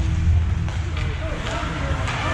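Rock music over an ice rink's PA system that breaks off less than a second in, followed by overlapping spectators' voices and the rink's general noise as play starts.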